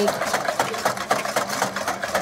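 Wire whisk rapidly clicking against a ceramic bowl, about six clicks a second, as egg yolks are whisked while hot cream is added to temper them.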